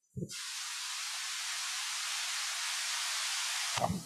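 A soft thump, then a steady high hiss from the meeting's audio feed that starts abruptly and cuts off abruptly near the end.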